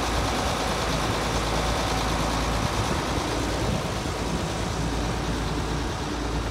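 John Deere 5460 self-propelled forage harvester's diesel engine idling steadily.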